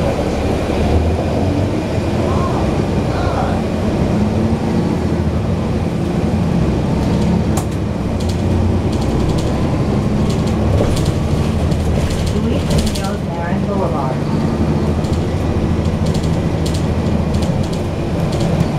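Cummins ISL inline-six diesel engine of a NABI 416.15 transit bus, heard from the rear seats close to the rear-mounted engine: a loud, steady low drone with shifting low tones. Short rattles and clicks from the bus body come through now and then.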